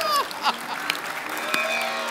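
Studio audience clapping and laughing. About half a second in, a long held note begins.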